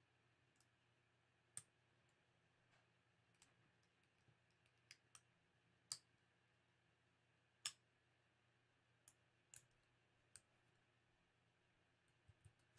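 Faint, irregular computer mouse clicks, about a dozen scattered over near silence, the loudest two about six and eight seconds in.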